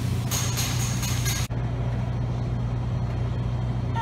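Steady low hum of restaurant room noise, with hiss over it. A thin high whine and the extra hiss cut off abruptly about one and a half seconds in.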